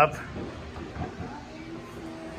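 A man's short spoken 'yup' at the very start, then faint voices and room noise in the background.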